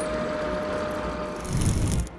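Stryker 8×8 armoured vehicle's Caterpillar diesel engine running as the vehicle creeps forward, a steady hum.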